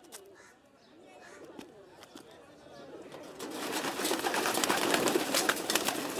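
Faint calls at first, then from about three seconds in a loud flurry of rock pigeons' wings flapping, full of sharp claps, with some cooing.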